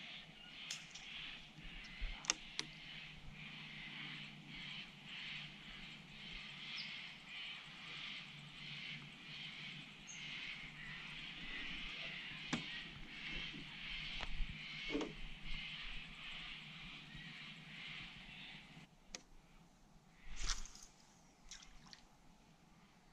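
Fishing reel being wound steadily during a lure retrieve, a fine whirring that stops about three seconds before the end. A few light clicks and knocks from handling the rod and the boat follow.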